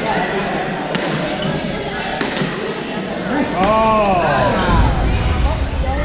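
Badminton rally in a reverberant sports hall: sharp racket strikes on the shuttlecock about once a second, with a short rising-and-falling squeak of sneakers on the court floor about three and a half seconds in, over the chatter of players on the other courts.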